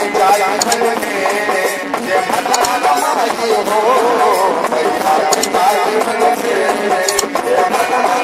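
A male voice singing a Bhojpuri devotional bhajan, its melody wavering and ornamented, over steady harmonium chords. Sharp metallic hand-percussion strikes sound a few times.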